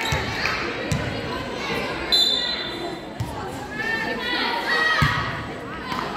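Volleyball rally in a large gym: a few sharp hits of the ball, short high squeaks of sneakers on the hardwood floor, and voices carrying in the hall.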